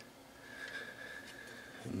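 Quiet small-room tone with a faint steady high-pitched whine and a few faint soft ticks; a man's voice begins right at the end.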